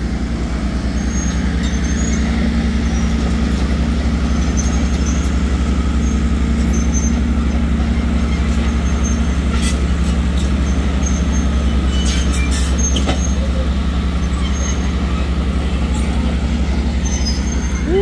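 Diesel crawler dozer running steadily as it works, a constant low engine drone, with a few faint high squeaks and clicks over it.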